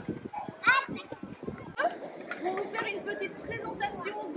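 Children's voices chattering and calling out in a moving group, with a short high yelp just under a second in.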